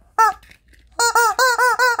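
Squeaky rubber chicken toy squeezed by hand: one short squeak, then from about a second in a fast run of squeaks, about five a second, each rising and falling in pitch.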